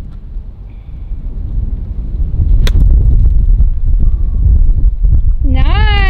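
A golf club striking a ball off bare desert dirt: one sharp crack about two and a half seconds in, over a low rumble of wind on the microphone. A voice rises near the end.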